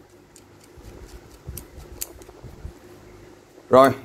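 Quiet scattered clicks and soft knocks of a steel adjustable wrench and a steel ruler being handled in gloved hands as the wrench's jaw is opened wide, with a couple of sharp metallic ticks near the middle.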